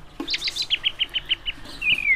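Cockatiels chirping: a quick run of short, high chirps, about eight a second, then a short call that falls in pitch near the end.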